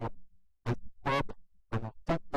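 Speech only: a man's voice presenting a talk, in short bursts of syllables with brief pauses.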